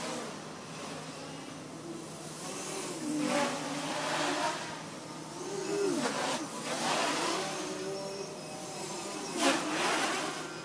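Armattan 290 quadcopter's brushless motors and propellers buzzing in acrobatic flight, their pitch rising and falling with several bursts of throttle, the loudest near the end.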